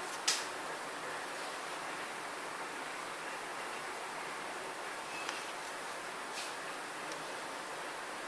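Steady hiss of background room noise, with one short click just after the start and a couple of faint ticks later.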